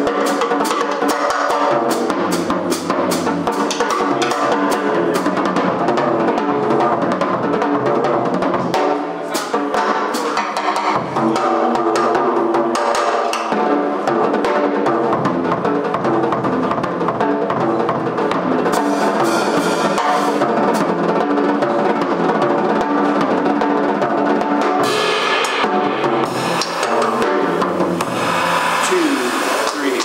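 Drum kit played live in a jazz drum solo: fast strikes on snare, bass drum and cymbals, with held bass-range notes sounding underneath.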